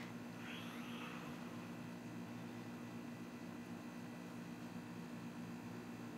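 Faint steady low hum throughout. About half a second in comes a brief soft scrape: a silicone spatula stirring condensed milk and butter in a metal saucepan.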